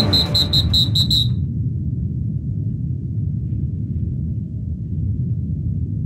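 A steady low rumble with nothing high-pitched in it. In the first second a high tone pulses about five times a second and fades away like an echo.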